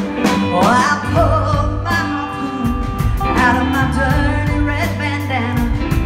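Live band playing, with a woman singing lead over electric guitar, bass, keyboards and drums keeping a steady beat.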